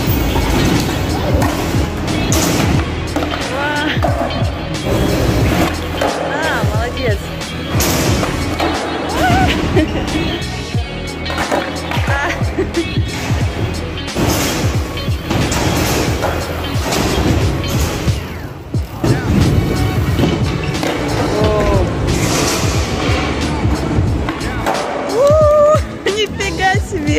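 Skateboard wheels rolling on concrete, with repeated clacks and knocks as the board is popped and lands during ollie attempts, under background music.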